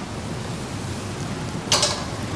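Steady hiss of background noise, with one short hissing burst near the end.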